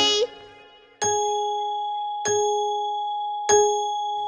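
A clock bell striking three times, about a second and a quarter apart, each strike ringing on until the next: the clock striking three o'clock.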